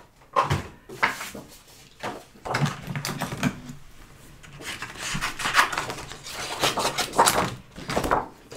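Cardstock and a plastic cutting plate being handled on a tabletop: several short clacks and knocks, with paper rustling and scraping in between.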